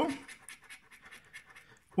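A coin scraping the coating off a paper scratchcard in a series of short, faint strokes.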